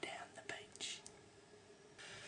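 A man whispering a few words in the first second, then near silence.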